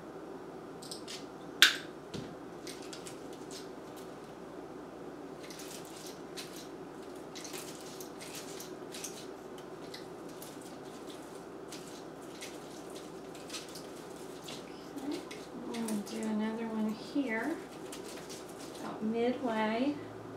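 Wire cutters snip floral wire with one sharp click, followed by light clicking and rustling as wire is twisted around artificial greenery on a grapevine wreath. A woman's voice sounds briefly twice near the end, without clear words.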